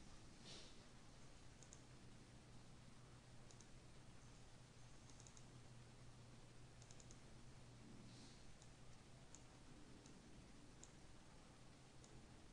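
Near silence with faint computer mouse clicks scattered through, some in quick pairs and runs as folders are double-clicked open, over a low steady hum.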